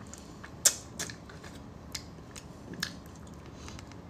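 Close-up eating sounds: about five short, sharp mouth and chopstick clicks and smacks as soft braised fish is eaten. The loudest comes just under a second in.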